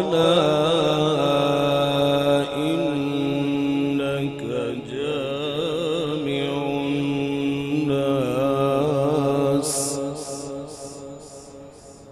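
A male qari reciting the Quran in a melodic chanting style through a PA system, holding long notes with a wavering, ornamented pitch. Near the end the phrase fades away in repeating echoes.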